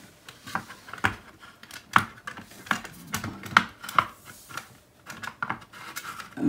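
Irregular small clicks and knocks of an LED wall light fitting being handled and pushed into position against the wall over its mounting bracket.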